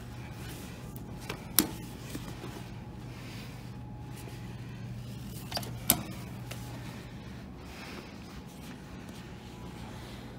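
Two sharp clicks about four seconds apart, each with a smaller click just before it: an elevator hall call button being pressed. A steady low hum runs underneath.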